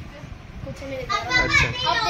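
A child's high-pitched voice calling out in the second half, after a quieter first second of room noise.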